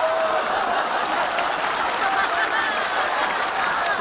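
Audience applauding steadily, with faint voices mixed in.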